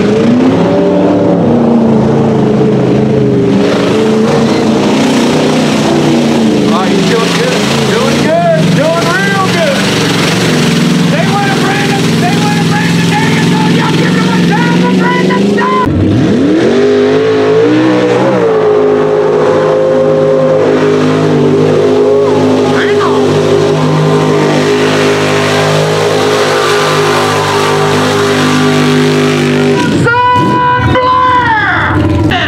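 Lifted mud-bog trucks' engines revving hard and running at high revs, the pitch rising and falling with the throttle. About halfway through a second truck's engine comes in with a sharp rise in revs, then holds a steady high note.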